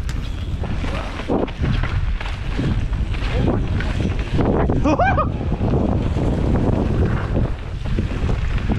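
Wind rushing over the microphone while a mountain bike descends a dirt singletrack, with steady trail rumble. A brief wavering yell about five seconds in.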